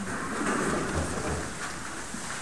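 Rustling of many hymnal pages being turned by a congregation looking up an announced hymn, an even papery hiss with a soft low thump about a second in.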